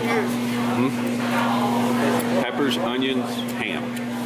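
Indistinct voices talking over a steady low hum.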